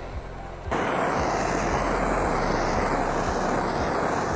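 Handheld gas torch flame burning steadily with a rushing hiss, starting about a second in, as it is passed low over a wet epoxy flood coat to pop the bubbles.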